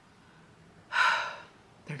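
A woman's sharp audible breath, a single noisy rush about half a second long, about a second in, in a pause in her talk.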